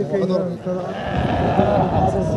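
Sheep bleating, one drawn-out bleat in the second half, with men talking close by.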